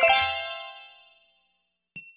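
Last note of a bright chime-like mallet-percussion intro jingle ringing out and fading away over about a second, followed by a short silence and then a sharp, high ding at the very end.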